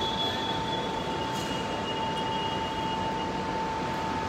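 Steady background noise of an airport terminal entrance, with a constant pitched hum running through it and no break.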